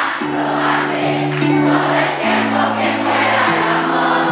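Live band playing held chords that change twice, with the concert audience singing along as one large crowd chorus.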